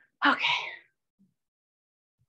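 A woman's short, breathy vocal burst, about half a second long, a little after the start; nearly silent after it.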